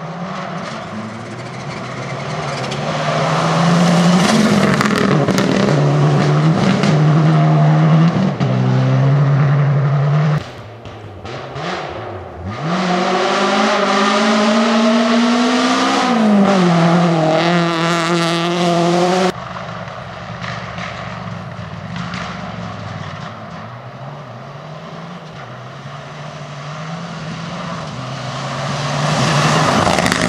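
Rally cars driving flat out on a gravel stage one after another, their engines revving hard and stepping through gear changes, the pitch rising and falling as each car passes. The sound cuts abruptly between cars: once about ten seconds in and again a little before twenty seconds.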